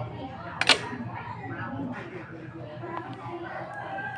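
A single sharp click about two-thirds of a second in, over faint background voices.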